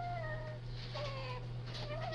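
Newborn baby crying in short wails that fall in pitch, a second wail starting about a second in.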